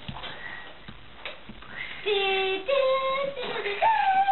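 A child singing a wordless tune in long, steady held notes, starting about halfway through, after a quieter stretch with a few faint clicks.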